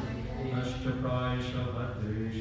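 A man chanting a Sanskrit verse in a sung tone, on long held notes that step from pitch to pitch.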